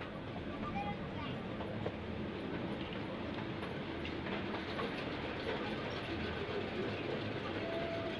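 Zoo passenger train running steadily on its track, heard from an open-sided car: a continuous, even rumble of wheels and rolling cars.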